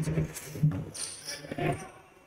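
Faint, broken talk in men's voices over the sound of an indoor basketball game, fading toward the end.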